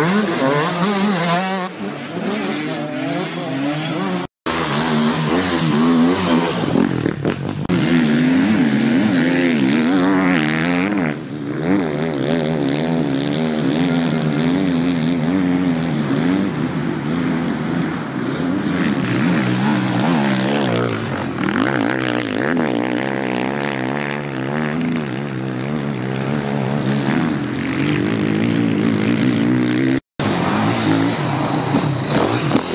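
Enduro dirt bike engines revving hard on a dirt track, the pitch rising and falling quickly as the throttle is worked, with a brief drop in the sound about four seconds in.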